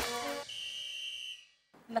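Electronic doorbell giving one steady high-pitched beep, a little under a second long, announcing a caller at the door.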